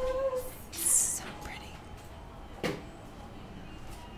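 A woman's soft hummed 'mm' that ends about half a second in, then a short breathy exhale, and a single light click later on.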